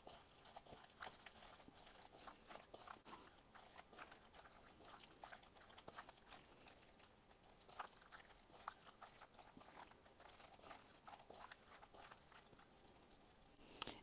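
Faint, wet squishing and smacking of gloved hands kneading raw boneless chicken thighs in an oily spice marinade in a mixing bowl.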